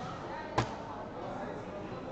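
A soft-tip dart striking an electronic dartboard once, a single sharp hit about half a second in, scoring 16. Background chatter of people in the hall.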